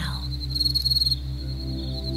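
Ambient relaxation music: a low sustained drone with a soft, even pulse and faint held tones, with crickets chirping in a high trill over it. The trill is strongest from about half a second in to just past one second.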